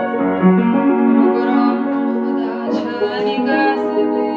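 Upright piano playing a slow, melodic accompaniment to a Georgian urban song, with chords and melody notes ringing on.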